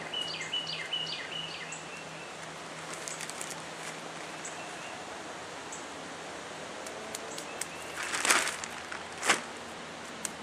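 Birds chirping and singing over outdoor background noise, busiest in the first two seconds. Near the end a plastic soil bag is handled: a half-second rustle, the loudest sound here, then a sharp short crinkle about a second later.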